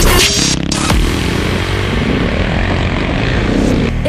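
Single-cylinder engine of a KTM 690 Enduro R dual-sport motorcycle running under way on a dirt trail, heard from a camera mounted on the moving bike as a steady, noisy drone mixed with wind. Music is heard only for about the first half second.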